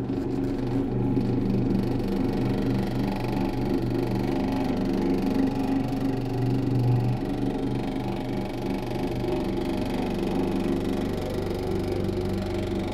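A dense low drone in a piece of experimental contemporary music: many steady tones stacked together and held without a break, wavering slightly, with the lowest band swelling a little in the middle.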